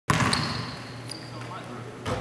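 A basketball bounced hard once on a hardwood gym floor, the bang ringing on in the large hall as it fades. Two short high squeaks follow, typical of sneakers on the court, over a steady low hum.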